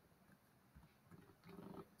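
Near silence: room tone, with a faint murmured voice in the second half.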